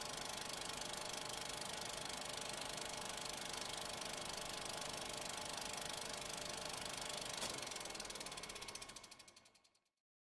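Film projector running with a steady mechanical clatter, then winding down in a slowing rattle and stopping just before the end.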